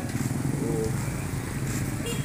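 Small motorcycles running along the street, a steady low engine drone.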